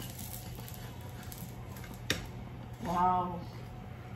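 A spatula lifting and turning a slice of batter-coated bread toast on a tawa, with one sharp tap on the pan about two seconds in, over a quiet background. A short hummed voice sound comes about three seconds in.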